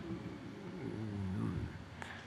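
A faint, low voice-like hum whose pitch wavers up and down for about a second and a half, then fades.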